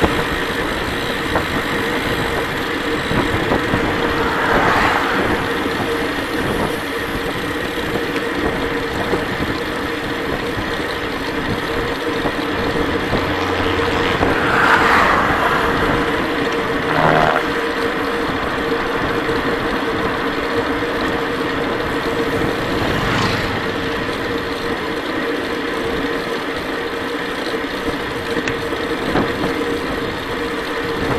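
Steady wind and road noise on a bicycle-mounted camera's microphone as a road bike rolls along asphalt, with a steady hum underneath and a few brief swells.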